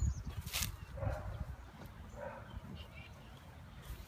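A dog barking faintly, twice, over a low rumble, with a sharp click shortly after the start.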